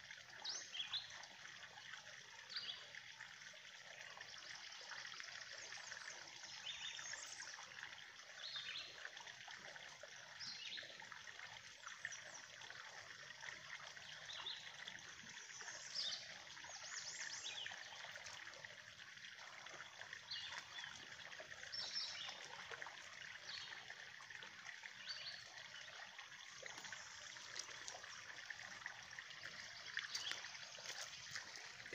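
Faint steady trickle of water from a drain pipe spilling into a pond, with scattered short bird chirps over it.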